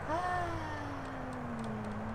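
A person's voice: one long, drawn-out vocal sound that falls slowly in pitch, over a steady low hum.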